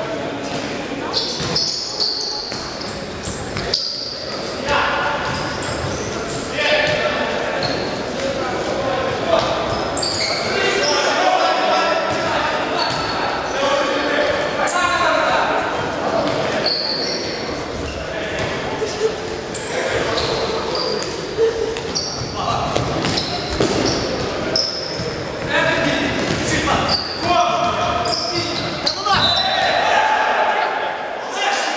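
A futsal ball being kicked and bouncing on a wooden sports-hall floor, echoing in the large hall, with short high squeaks scattered through. Players call out throughout.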